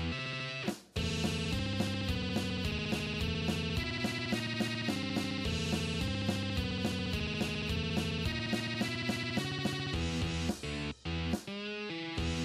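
Electric guitar playing rapid tremolo-picked chords in a steady, fast pulse. Near the end it breaks into a choppy two-note riff with short gaps.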